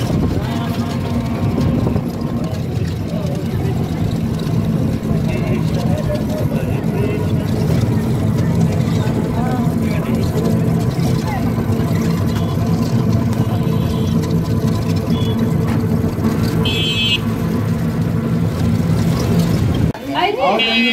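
A group of voices chanting together without a break, heard from inside a moving electric rickshaw, with street traffic noise around them. A few short high beeps cut in near the end.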